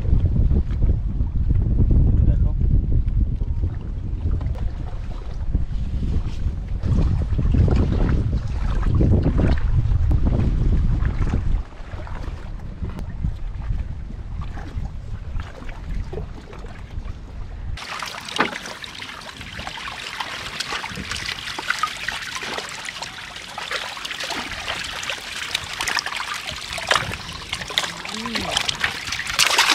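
Wind buffeting the microphone, with water lapping against a small wooden boat on choppy water. About eighteen seconds in, the sound cuts abruptly to a brighter hiss of trickling, splashing water.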